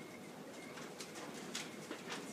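Dry-erase marker writing on a whiteboard: a few short, faint scratches and squeaks at irregular intervals.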